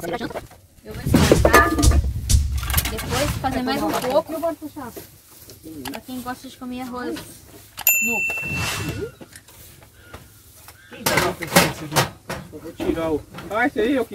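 Voices talking, with a single short electronic chime about eight seconds in: the sound effect of a subscribe-and-notification-bell animation.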